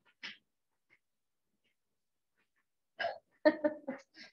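A woman's brief vocal sounds: a short breathy burst just after the start, then, about three seconds in, a few quick voiced bursts in a row, with near silence between.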